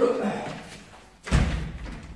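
A heavy thump with a deep low end about a second and a half in, after a muffled voice-like sound at the start.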